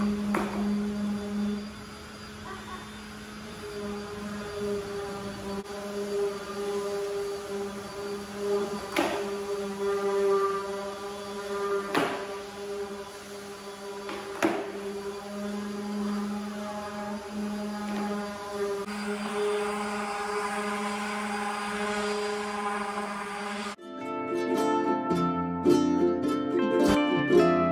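Handheld orbital sander running steadily on pallet-wood boards, a humming motor whose level dips for a couple of seconds early on, with a few sharp clacks. Plucked-string music takes over near the end.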